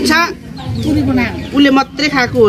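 Domestic hens clucking, mixed in with voices talking.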